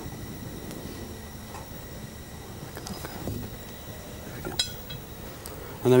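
A few faint clinks of a metal deflagrating spoon against a glass gas jar over a low steady hiss, the sharpest one a little before the end.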